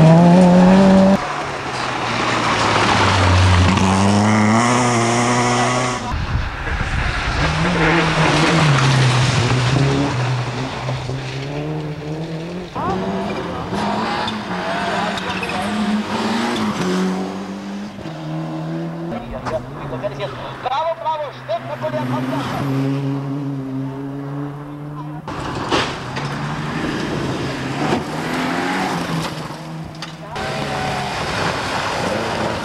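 Rally cars driven flat out on a stage, their engines revving hard. The engine note repeatedly climbs and drops as gears are changed. The sound cuts abruptly between several passing cars.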